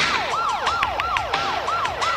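Siren in a fast yelp, each wail sweeping up and then dropping, about three or four a second.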